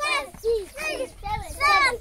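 A group of young schoolchildren reciting together in unison: high voices in an even chant of about three syllables a second.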